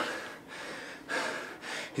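A man breathing hard, with two or three loud breaths, winded from the exertion of a wrestling match.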